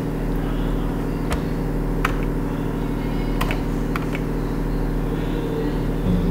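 A steady low hum made of several steady pitches, with a few faint clicks from a computer mouse, the first about a second in.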